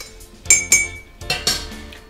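A metal teaspoon clinking against a ceramic mug as a drink is stirred, with a couple of sharp, ringing clinks about half a second in. Background music plays underneath.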